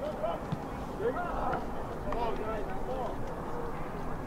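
Several distant voices shouting and calling over one another across a soccer field, from players and spectators, with a low rumble underneath.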